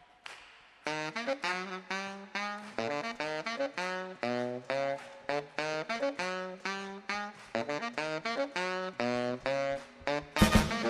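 Tenor saxophone playing alone, a fast run of short, detached notes that starts about a second in.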